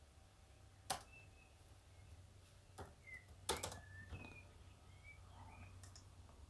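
Faint computer keyboard keystrokes, a few scattered clicks: one about a second in, another near the three-second mark and a quick pair just after.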